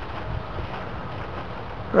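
Steady wind noise on the microphone, an even hiss with no distinct events.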